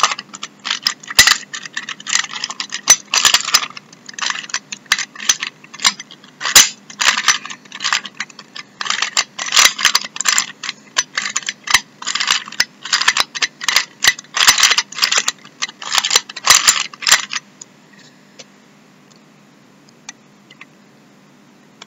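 Plastic 3×3 Rubik's Cube layers being twisted rapidly by hand, one quick clacking turn after another as the same four-move sequence is repeated. The clicking stops about three seconds before the end.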